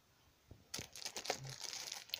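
Clear plastic wrapping around a tablet box crinkling and crackling as it is handled, starting a little under a second in.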